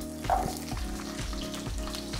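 Chopped celery, parsnip and carrot sizzling as they are dropped into hot oil in a non-stick frying pan.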